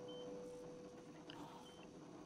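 Faint short high beeps of a hospital patient monitor, twice, about a second and a half apart, over the last held note of the film's score fading out near the end.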